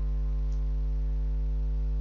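Steady electrical mains hum: a low, unchanging drone with a ladder of buzzy overtones, picked up in the recording chain.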